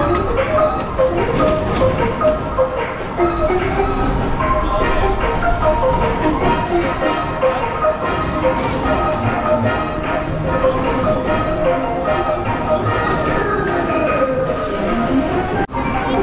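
Upbeat ride music from the loudspeakers of Disney's Alien Swirling Saucers, with a steady beat and bright melody. The sound breaks off for an instant near the end.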